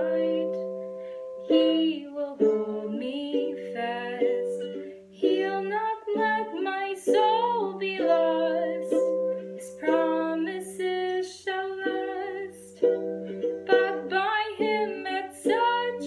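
A woman singing a hymn in a small room, accompanying herself on a strummed acoustic string instrument.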